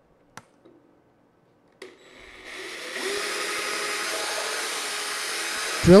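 A click, then a cordless drill starts about two seconds in, bit boring into drywall: the sound builds over about a second and runs steadily until it stops just before the end.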